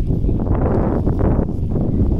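Wind buffeting the microphone: a steady, loud low rumble.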